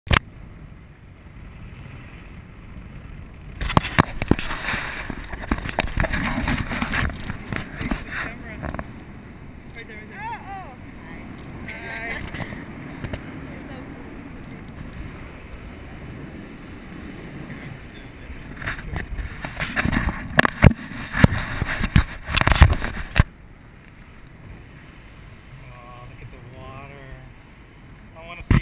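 Wind rushing and buffeting over an action camera's microphone high on a parasail, with two loud gusty stretches, about four seconds in and again from about nineteen to twenty-three seconds in. Faint voices come through in the quieter part between them.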